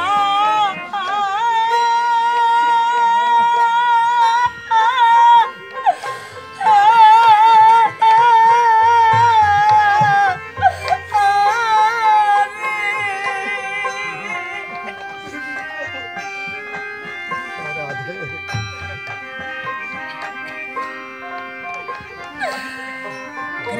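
Live devotional kirtan music: a high melody line held in long, wavering notes over a steady accompaniment for the first half or so, then a softer passage of shorter, steady notes.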